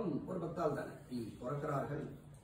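A man speaking in short phrases with brief pauses.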